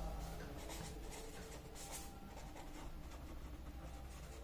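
Pen scratching faintly across notebook paper as a word is handwritten.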